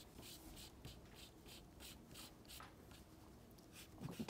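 A soft pastel stick stroked quickly and repeatedly across paper, a faint dry scratching at about three or four strokes a second, as brown shading is laid along the sunflower's petals.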